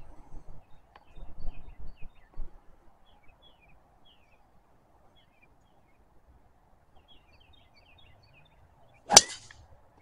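A golf driver striking a ball off the tee: one sharp, loud crack about nine seconds in, with a brief ringing tail.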